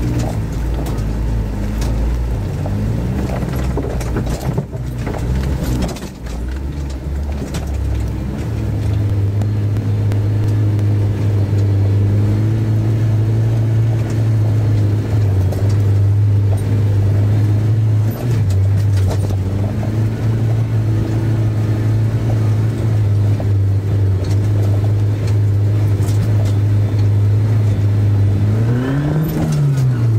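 Off-road 4x4's engine heard from inside the cab, running steadily under load as it drives a snowy lane. It sounds lower and rougher with a few knocks over the first few seconds, then holds a steady drone, and briefly revs up and back down near the end.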